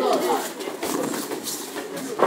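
Indistinct voices of coaches and spectators shouting and talking at ringside during a boxing bout, with no clear words.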